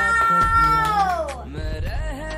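Background music with a high voice holding one long note that slides down and fades about one and a half seconds in.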